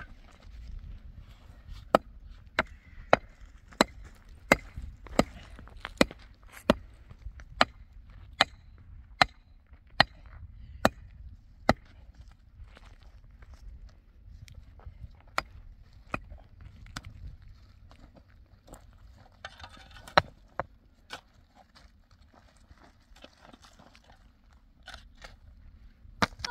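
A hand digging tool chopping into stony soil at the base of a freshly planted sapling: about fourteen sharp strikes, steady at a little over one a second, then a few scattered blows. A low rumble runs underneath.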